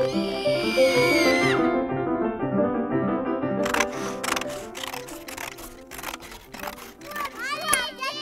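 Gentle film score with piano-like notes. At the start a child's high, drawn-out voice is heard, dropping away after about a second and a half. From about the middle there is a run of sharp clicks and rustles, and near the end children's voices rise and fall quickly.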